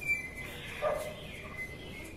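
A dog barking briefly just under a second in, with faint high chirps around it.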